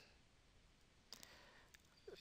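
Near silence: room tone, with a few faint clicks a little over a second in and one more near the end.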